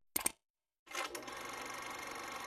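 A short click, then from about a second in a faint, steady, rapid mechanical rattle, like a small machine running as a 'getting to work' sound effect.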